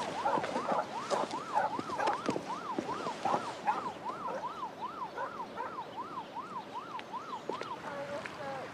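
Emergency vehicle siren wailing in quick up-and-down sweeps, about two to three a second, cutting off near the end.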